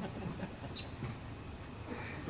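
Faint evening outdoor ambience: a low steady hum with a few short, high insect chirps, and a couple of soft low knocks.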